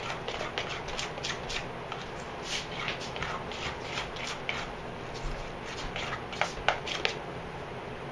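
A spoon stirring and scraping thick waffle batter in a stainless steel mixing bowl, a quick run of short scrapes, with a few sharper knocks against the bowl about six to seven seconds in.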